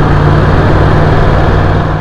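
Sport motorcycle engine running at steady revs while riding, its low, even drone mixed with road and wind noise.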